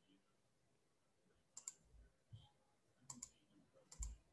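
Near silence with a few faint clicks, most in quick pairs: one pair about a second and a half in and another about three seconds in.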